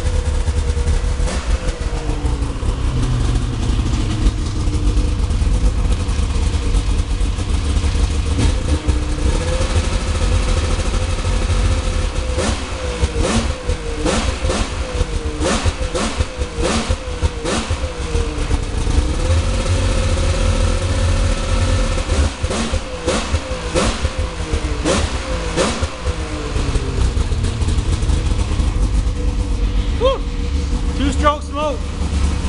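A snowmobile's 800 cc three-cylinder two-stroke engine running as it warms up. Through the middle stretch it is given a series of quick throttle blips, each a short rise and fall in pitch with sharp cracks. It runs rich and burns some oil, which the owner accepts as long as it keeps running well.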